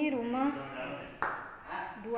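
A person's voice speaking, the words not made out, with a single sharp click just after a second in.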